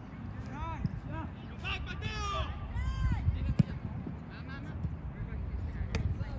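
Indistinct shouts and calls of soccer players on the pitch, short raised voices coming one after another over a steady low outdoor rumble. A single sharp knock sounds about three and a half seconds in.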